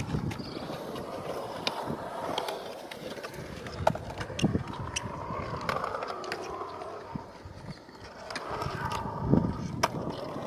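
Skateboard wheels rolling over a concrete skatepark bowl, swelling and fading as the rider carves. Scattered sharp clicks and clacks come from the board, with a strong one near the end.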